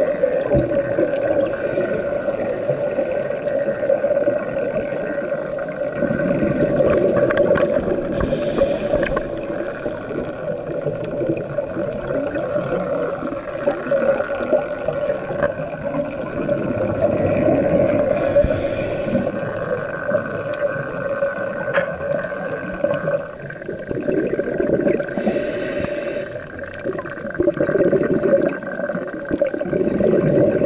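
Scuba breathing heard underwater: three breaths about ten seconds apart, each a short regulator hiss and a swell of exhaled bubbles, over a steady hum.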